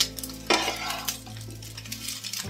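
Metal spatula stirring and scraping a crumbly turmeric-coloured fish-roe filling around a non-stick frying pan, with a light sizzle of frying. The loudest scrape comes about half a second in.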